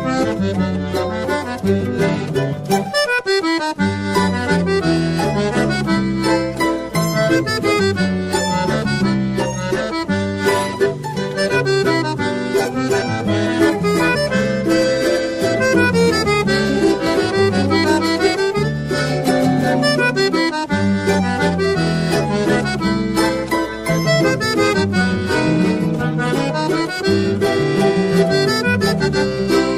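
Instrumental choro played by a regional ensemble: a sustained melody over guitar accompaniment, with no singing.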